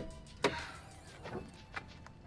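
A few short clicks from a pickup truck's hood latch being worked. The loudest comes about half a second in, followed by two fainter ones.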